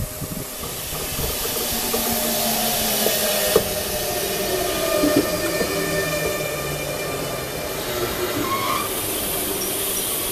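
A double-deck electric suburban train running in along the platform. The rushing of wheels and air grows about a second in, with faint whining tones above it and a single sharp clack about three and a half seconds in.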